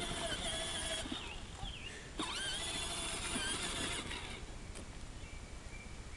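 Battery-powered toy ride-on quad running, its small electric motor and gearbox whining as the plastic wheels roll on asphalt. It comes in two spurts: about a second at the start, then again from about two to four seconds in.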